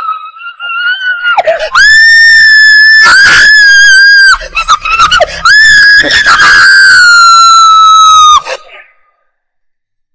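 A woman screaming in terror: two long, very high-pitched screams, each held for a couple of seconds, the second starting about six seconds in, with shorter cries between them. Both screams are very loud.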